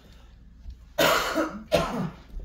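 A person coughing twice about a second in, the first cough longer and the second short and sharp.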